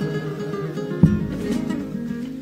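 Comparsa pasodoble accompaniment: Spanish guitars strumming sustained chords, with a single bass drum (bombo) stroke about a second in.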